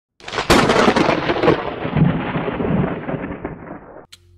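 A sharp crack followed by a long rumble that dies away over about three seconds, like a thunderclap sound effect.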